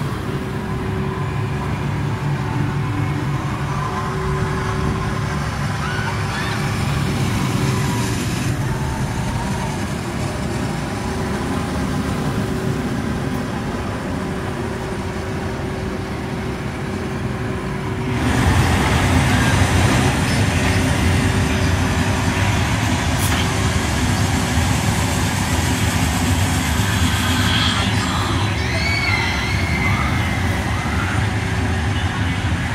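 Theme-park ambience beside a steel launched roller coaster: a steady machine hum and continuous noise from the ride with voices in the background, getting louder about 18 seconds in.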